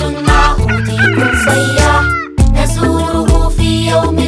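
Bright children's song music with a beat, and a chicken sound effect laid over it: one long call starting about a second in and dropping in pitch as it ends about a second later.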